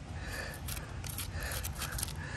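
Gloved hand rubbing over rough pine bark, giving a few faint, short, scratchy scrapes.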